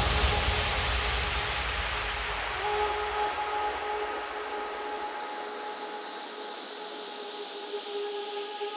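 Breakdown in a 140 bpm trance track: with the beat gone, a wash of white noise and low bass fades away. About two and a half seconds in, sustained synth pad notes come in and hold.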